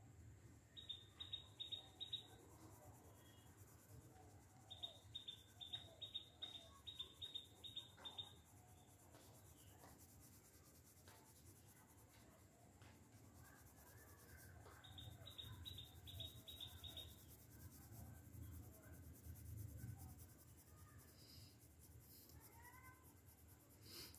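Three runs of quick, high chirps, about six a second, come from a small creature in the background. Beneath them is the faint scratch of a coloured pencil shading on paper.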